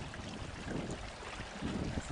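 Wind rumbling on the microphone over faint lapping water, from a canoe on a lake.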